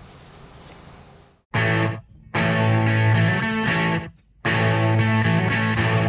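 Rock music with distorted electric guitar starts about a second and a half in: a short chord stab, then held chords broken by two brief stops.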